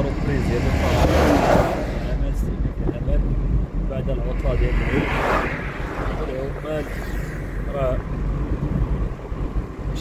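Wind buffeting the microphone and road rumble from a moving vehicle with its window open. A passing vehicle swells up and fades away about five seconds in, with a shorter swell about a second in.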